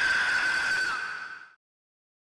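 The tail of a held high-pitched tone that dips slightly in pitch and fades out about a second and a half in, after which the audio goes completely silent.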